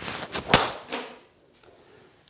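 Driver swung at full speed, a whoosh building through the downswing, then a single sharp impact as the clubhead strikes the golf ball about half a second in. The ball is struck a little out of the toe at about 105 mph clubhead speed.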